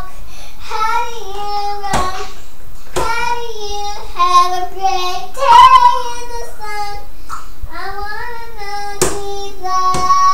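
A young girl singing unaccompanied, holding high notes in short phrases with brief breaks between them. A few sharp taps sound along with the singing.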